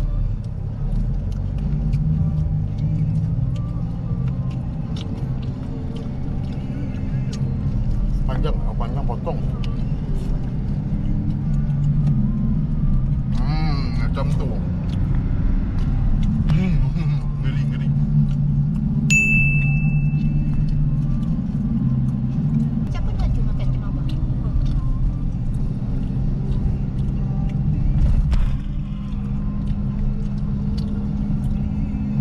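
Car engine and road noise droning steadily, heard from inside the cabin while driving. A single short high-pitched beep sounds about two-thirds of the way through.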